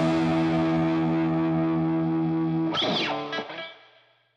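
Distorted electric guitar holding the song's final chord, ringing steadily, then bending sharply in pitch about three seconds in and dying away to silence.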